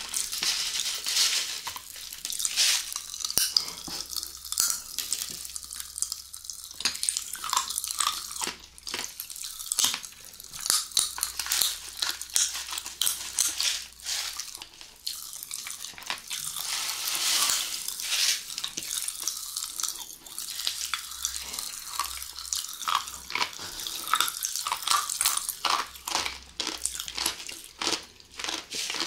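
Close-miked mouth sounds of candy eating: wet squelching of gel candy squeezed from a tube into the mouth, and popping candy crackling on the tongue in quick, irregular snaps.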